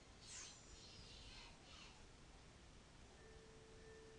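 Near silence: faint playback of a song's quiet intro with an echo effect applied. It carries a few faint falling sweeps in the first two seconds and a faint steady tone from about three seconds in.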